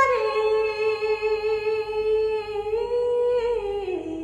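A woman singing one long sustained note, unaccompanied. The pitch steps up about three seconds in and falls again near the end.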